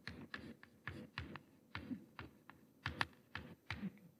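Chalk writing on a blackboard: a faint, irregular run of quick taps and short scrapes, about four a second, as letters are written.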